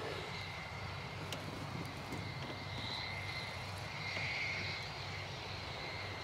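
Tractor engine running steadily while working a field, heard as a faint, steady drone.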